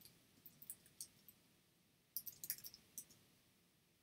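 Faint computer keyboard key clicks: a few scattered keystrokes, then a quicker run of them about two seconds in.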